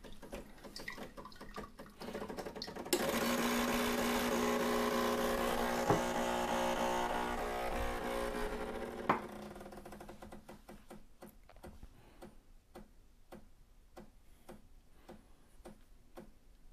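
Decent DE1 espresso machine's pump running with a steady buzz as a shot begins. It starts suddenly about three seconds in and cuts off with a click some six seconds later, and a faint, regular ticking of about two to three ticks a second follows.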